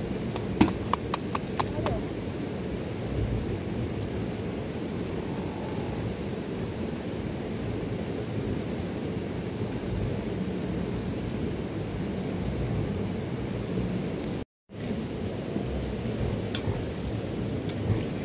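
Steady rushing noise of a nearby mountain river, with a few sharp clicks in the first two seconds. The sound cuts out for an instant about two-thirds of the way through.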